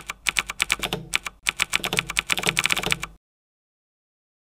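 Typing sound effect: a fast run of key clicks, about seven a second, with a short break about a second and a half in. It stops suddenly a little after three seconds.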